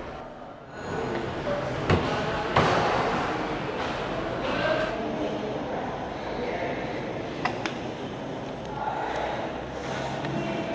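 Car front door being unlatched and opened by its handle: sharp latch clicks about two seconds in, then a couple more clicks and some rustling later as someone gets into the driver's seat.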